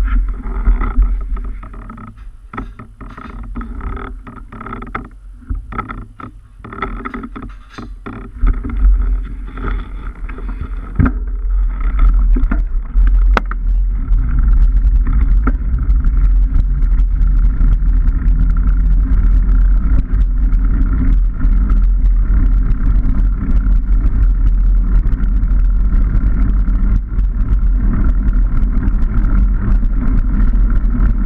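Mountain bike riding noise picked up by an action camera: knobbly tyres rolling on a rough lane and wind buffeting the microphone. Quieter with scattered clicks and rattles at first, then a louder, steady rumble from about twelve seconds in.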